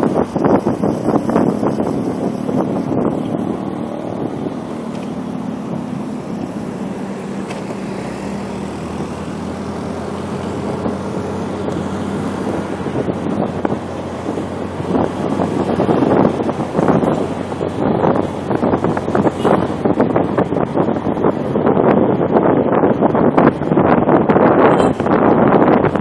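Wind buffeting the microphone of a moving motorcycle, over a steady engine and road noise. The gusts grow louder and more uneven in the last third.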